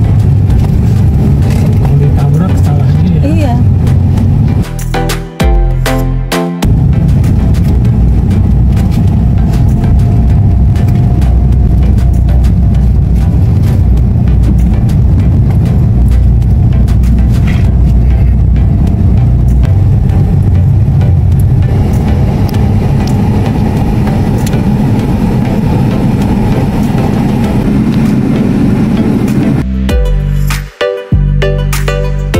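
Steady low rumble of a car driving, heard from inside the cabin: engine and tyre road noise. It breaks off briefly about five seconds in, then carries on.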